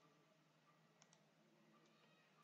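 Near silence, with one faint click about a second in.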